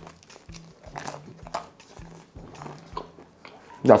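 Crunching and chewing of a slice of toasted baguette topped with grated tomato and garlic sauce, a short crunch about twice a second.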